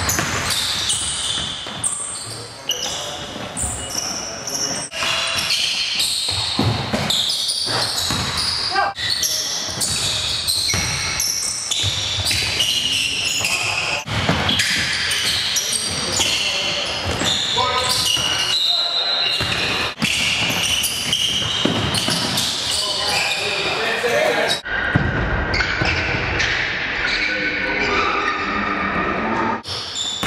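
A basketball bouncing on a hardwood gym floor during a game, with players' voices calling out, all echoing in the gymnasium.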